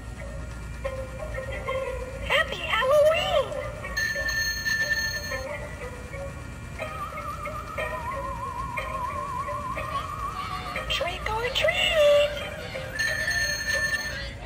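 Animated skeleton-riding-a-bicycle Halloween decoration playing its spooky sound effects and music through its small built-in speaker as it pedals. There are sliding whoops twice, a long warbling tone in the middle and a short ringing tone twice.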